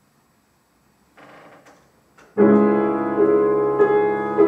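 August Förster grand piano entering with a loud, sustained chord about two and a half seconds in, after near silence broken only by a faint brief sound.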